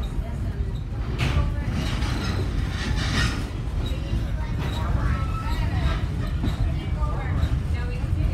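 Steady low rumble of a moving heritage railway passenger coach, heard from inside the car.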